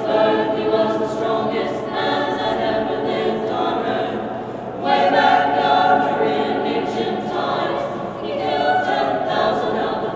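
Mixed high school choir singing a sustained choral passage in parts, growing louder about five seconds in.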